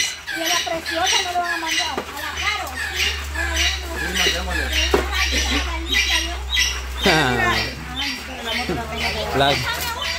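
A bird calling over and over in short high squawks, about three a second, beneath people talking.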